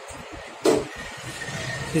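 A commode bucket being fitted into a commode chair's frame, giving one sharp knock about two-thirds of a second in.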